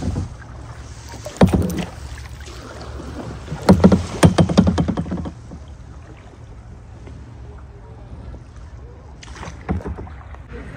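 Kayak paddling: a few splashing strokes of the paddle in the water, the longest and loudest cluster about four seconds in, over a steady low background rush.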